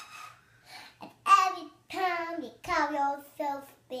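A young girl singing an improvised song: about four held, sliding sung notes, starting about a second in.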